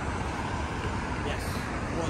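Steady town road traffic: the even hum and tyre noise of cars moving through a junction.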